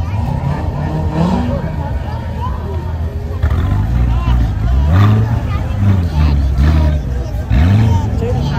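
Chevrolet Corvette V8 engines running as the cars pass close by, their note rising and falling several times and loudest about five seconds in and again near the end, over crowd chatter.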